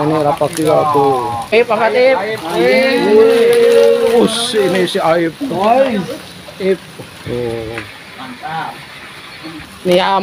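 People's voices talking and calling out over one another, louder for the first several seconds and quieter and more scattered toward the end.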